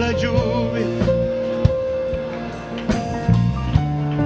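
Live church worship music: a keyboard holding sustained chords over a bass line, with several drum hits. A singing voice comes in briefly just after the start.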